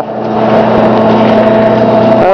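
Loud steady machine-like hum with a constant mid-pitched tone over a haze of noise.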